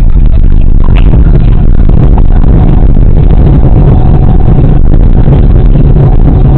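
Jet airliner's engines at takeoff power heard inside the cabin during the takeoff roll: a loud, steady roar with runway rumble, and a faint steady whine in the second half.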